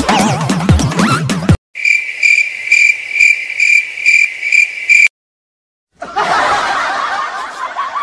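Electronic dance music cuts off near the start, then a cricket-chirp sound effect pulses evenly about two and a half times a second for about three seconds and stops abruptly. After a second of silence, snickering laughter begins.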